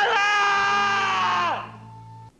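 A man bellowing a long, drawn-out "Stella!" up a stairwell, the held vowel falling away near the end, over a faint orchestral film score.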